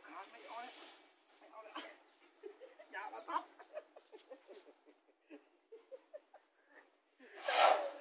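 Human voices, with short vocal sounds throughout and one loud cry near the end.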